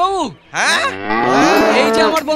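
A cow mooing: one long moo that begins about half a second in.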